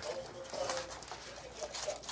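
Faint scuffling of dogs and puppies playing on a wooden floor, with a few small, faint vocal sounds from the animals.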